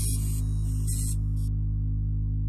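Ambient electronic music: a steady low synthesizer drone, with short hissy swishes up high that stop about one and a half seconds in.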